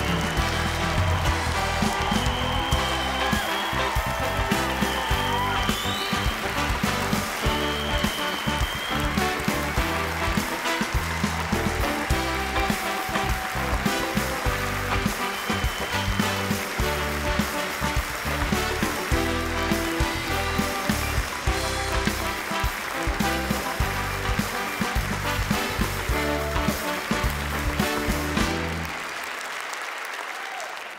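Upbeat band walk-on music with a steady beat, played over audience applause; the music stops just before the end.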